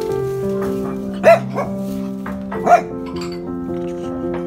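A small dog barks twice, about a second and a half apart, with a shorter bark just after the first, over background music.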